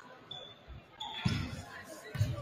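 A basketball bouncing on a hardwood gym floor: a light bounce, then a loud one just past halfway, with voices in the hall.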